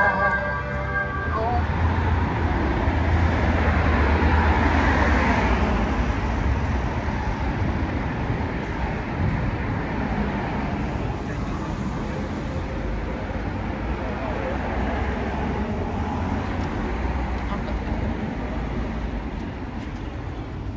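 Town-street traffic noise, with a vehicle passing that is loudest in the first few seconds and then eases. Christmas music from a Santa sleigh's loudspeakers cuts off about a second in.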